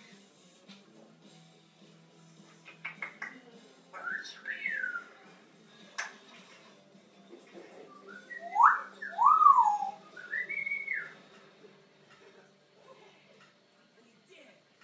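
African grey parrot whistling: a pair of short rising-and-falling whistles about four seconds in, then louder gliding whistles swooping up and down between about eight and eleven seconds, with a few sharp clicks before them.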